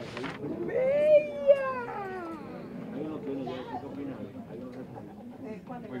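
People talking in the room, with one long, high drawn-out vocal exclamation about a second in that rises and then falls in pitch.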